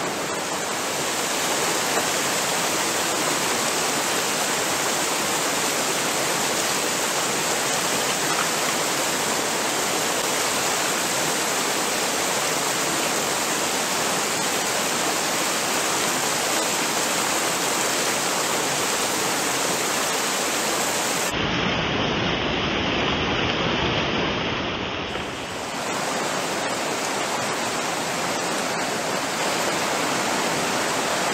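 Steady rush of a fast-flowing mountain stream pouring white over rocks. About three-quarters of the way through, it turns duller and deeper for a few seconds.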